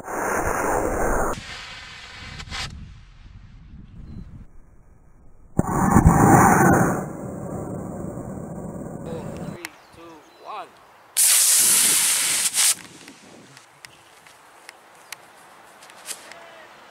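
Model rocket liftoff: a small black-powder Estes A10-0T booster motor ignites with a loud rushing hiss lasting about a second, heard twice about five and a half seconds apart. A further harsh burst of hiss comes about eleven seconds in.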